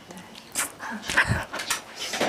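A woman's soft laughter in a few short, breathy bursts, muffled behind her hand.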